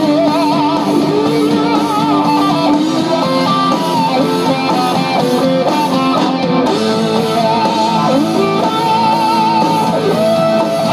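Electric guitar playing a slow lead melody: long held notes with wide vibrato and pitch slides, one about three seconds in and another near the end.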